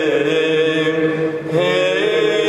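Greek Orthodox Byzantine chant: a voice sings a winding melody over a steady low held drone note (the ison). The melody drops away briefly about a second in, then comes back on a rising line.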